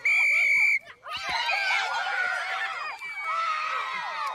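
A short steady whistle blast, then a group of children shouting and screaming excitedly over one another as they run about in a game.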